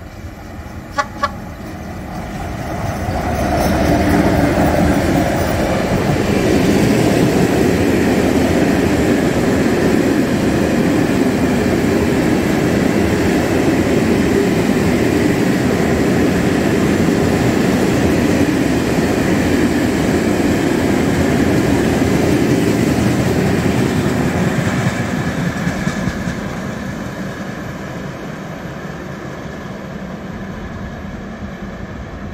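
A freight train of hopper wagons behind an electric locomotive passing close by on the track, its wheels running loud and steady on the rails. It builds up over the first few seconds, then fades as the train draws away near the end. There are two short, sharp sounds about a second in.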